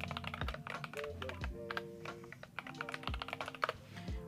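Typing on a computer keyboard: a quick run of key clicks with a short pause past the middle, over soft background music.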